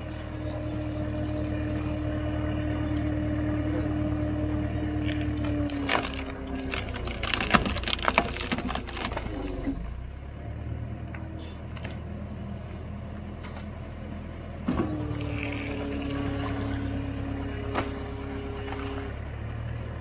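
Tractor-powered log splitter working: the engine runs steadily under a held whine as the ram pushes, then wood cracks and splinters loudly against the wedge for a few seconds around the middle. The whine comes back for a few seconds near the end as the next piece is pushed.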